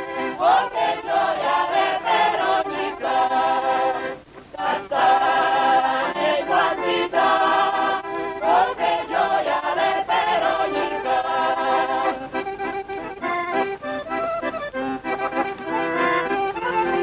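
A mixed choir of men and women singing a song together, accompanied by two accordions, with a brief break about four seconds in.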